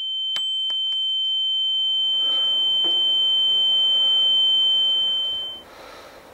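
A single steady high-pitched ringing tone, the film sound effect of ears ringing after a gunshot. It swells slightly, then dies away quickly about five and a half seconds in.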